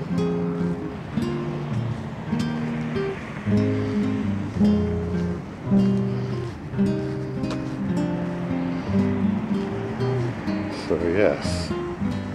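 Acoustic guitar music, plucked notes and chords.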